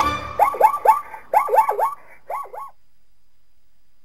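An animal's run of quick yelping calls in short bursts, each call sweeping up in pitch and back down. The calls stop a little under three seconds in, leaving a faint hiss.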